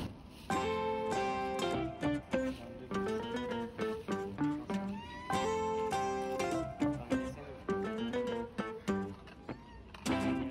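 Background music: a plucked acoustic guitar melody, starting about half a second in.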